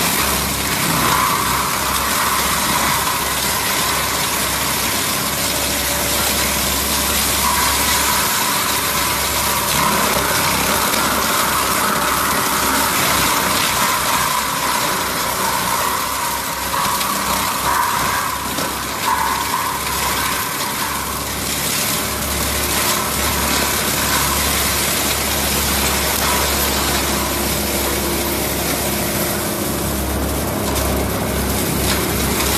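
Compact track loader's diesel engine running under load while its forestry mulcher head's spinning drum shreds brush and saplings, a steady mechanical din.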